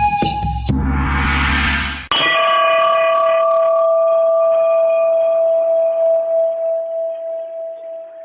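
Dance music breaks off into a rising swell, then a single gong stroke about two seconds in rings on one clear tone, fading slowly to the end as the piece closes.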